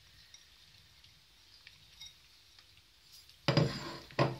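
Faint soft taps of cherries laid by hand onto tart dough, then about three and a half seconds in a short, loud clink and clatter as the ceramic bowl of cherries is set down on the wooden table.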